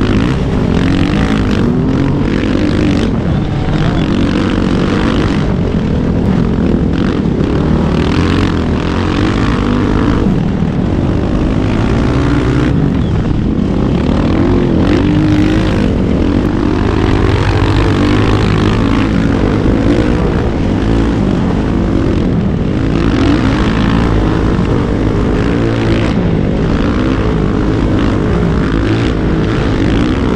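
Dirt bike engine running under changing throttle while riding through sand, its revs rising and falling, with wind buffeting the action-camera microphone.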